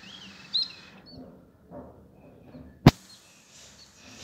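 Small birds chirping in short, curling calls in the first second, over a faint outdoor background. About three seconds in there is a single sharp click, the loudest sound.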